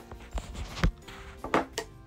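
A hammer knocking down Delft clay packed into a casting frame, four separate knocks in two seconds with the second the loudest, compacting the clay tight for the mould.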